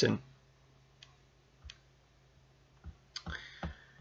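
Talk trails off, then a few faint, isolated clicks about a second apart, and a short faint breath or murmur near the end.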